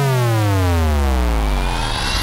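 Dubstep synth bass note sliding steadily down in pitch, sinking into a deep low rumble. Thin high tones start rising faintly about one and a half seconds in.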